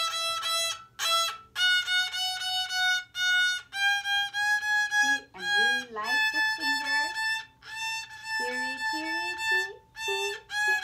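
Violin played by a beginner, going up the A major scale with short détaché bow strokes, each note repeated in the 'tiri tiri ti ti' rhythm before stepping up to the next. A voice sounds along with the notes in the second half.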